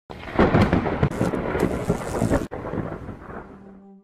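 Thunder: a crackling clap lasting about two and a half seconds, then a lower rumble that fades away.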